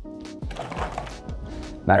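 Steel adjustable wrenches set down on a metal tabletop: a clank that rings briefly for about half a second, with background music underneath.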